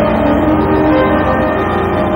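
Soundtrack music with held notes changing pitch over a low, steady rumble.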